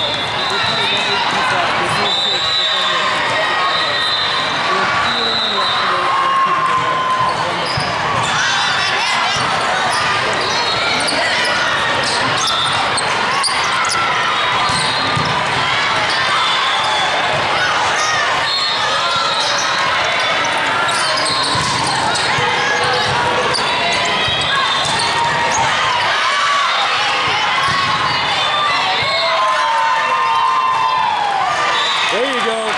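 Indoor volleyball in a large, echoing hall: sneakers squeak on the sport court and the ball is struck, over continuous chatter and calls from players and spectators. Steady high whistle tones sound in the first few seconds.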